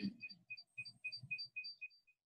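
A run of short, high squeaks repeating about four times a second, then stopping near the end. This is the unwanted squeaking in the audio that keeps coming back and can't be stopped. A throat-clear is heard at the start.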